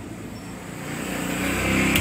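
A low, steady motor hum that grows gradually louder.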